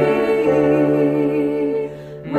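Two women singing a hymn together, holding long notes, with a short break for breath near the end.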